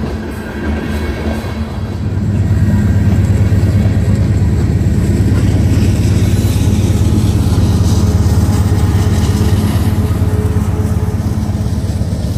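Freight train of loaded canola hopper cars rolling past, with a diesel locomotive's low drone that gets louder about two seconds in and then holds steady.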